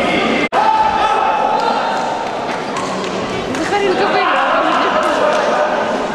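Voices echoing in a large sports hall, with scattered short thuds. About half a second in, the sound cuts out for a moment. A steady mid-pitched tone then runs for about two seconds.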